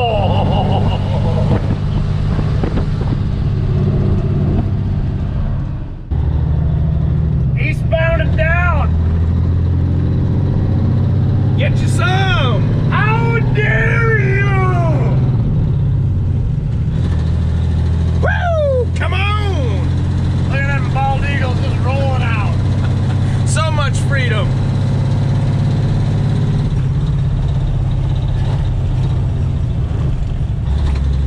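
Caterpillar diesel engine of a 1983 Peterbilt 362 cabover heard from inside the cab while driving, a steady low drone that dips and picks up again about six seconds in. Between about 8 and 24 seconds in, several runs of high-pitched squeals rise and fall over it.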